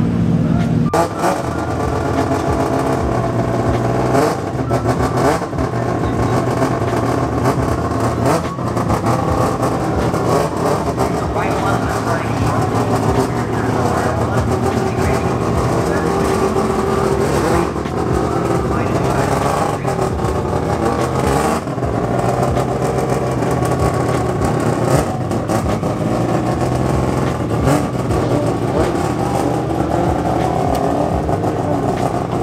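A drift car's engine running steadily, with people talking around it.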